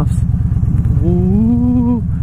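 Victory Cross Country motorcycle's V-twin engine running at low riding speed with a steady low rumble. About halfway through, the rider hums one long note that rises and then holds.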